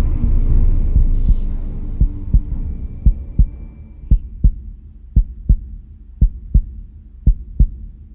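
Heartbeat-style sound effect in an edited soundtrack: pairs of short, low thumps, about one pair a second, starting about two seconds in. A low rumbling drone fades out before the thumps begin.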